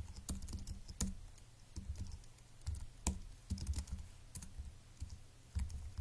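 Typing on a computer keyboard: irregular keystroke clicks in short bursts.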